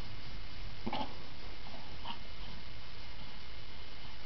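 A domestic cat giving a brief cry about a second in, then a second shorter one about a second later.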